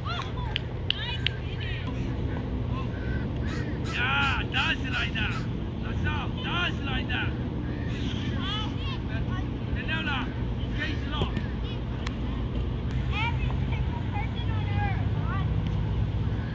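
Distant children's voices calling out across a field in short, high-pitched shouts, over a steady low hum.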